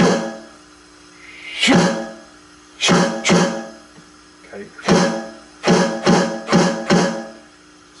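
Electronic drum kit played through an amplifier: single accented stick strokes on a pad, each hit ringing out with a pitched decay. The strokes come spaced apart at first, then in a quicker run of four near the end.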